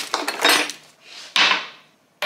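Rummaging in a kitchen drawer among tea and matcha packets, the packets rustling and knocking together, then one sharp knock about one and a half seconds in as something hard is set down.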